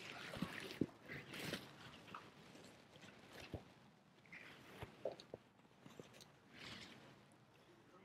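Near-quiet lecture-room tone with scattered faint clicks, small knocks and brief rustles.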